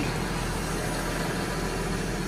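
Diesel engine of a telehandler running steadily at idle, heard from inside its cab.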